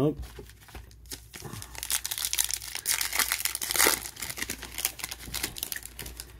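Foil trading-card pack wrapper crinkling and tearing as it is ripped open by hand, with a few seconds of dense, irregular crackling.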